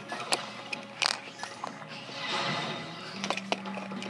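Scattered small clicks and rattles of Lego plastic pieces being handled, as a skeleton minifigure is fitted onto a Ninjago spinner.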